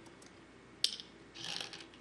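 Go stones on a wooden board: one sharp click about a second in, then a short rattling clatter of stones.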